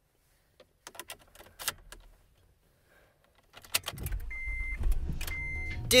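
Key clicking and jingling as it goes into a Honda Odyssey's ignition, then the engine starting about four seconds in and running at a steady low idle, with two short beeps. The start shows that the immobilizer chip in the glued-up key fob is being read.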